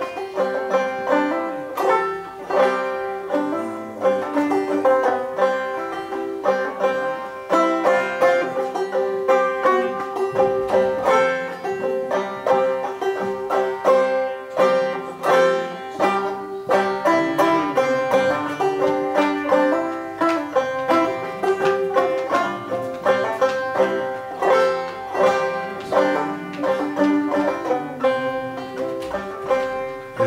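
Banjo played solo in an instrumental break between sung verses: a steady run of picked notes over one note that keeps ringing throughout.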